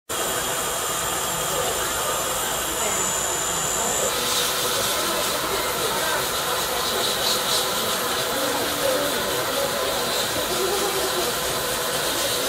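Dental lab micromotor handpiece spinning a polishing wheel against a cast metal restoration, giving a steady hiss.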